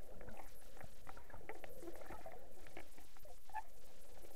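Underwater sound picked up by a submerged camera over a coral reef: a steady mass of irregular clicks and crackles, with some bubbling.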